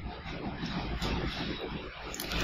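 Steady low background rumble and hiss of room noise, with no distinct events.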